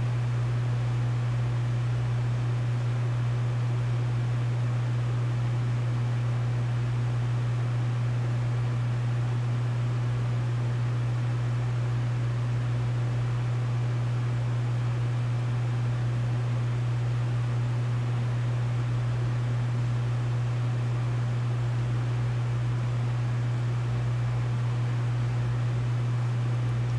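A steady low hum with an even hiss over it, unchanging throughout.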